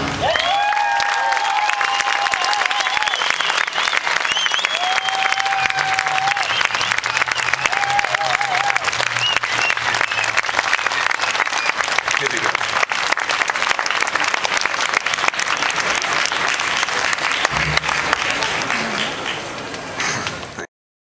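Concert audience applauding and cheering, dense clapping with shouts and cheering voices rising above it, tailing off slightly near the end.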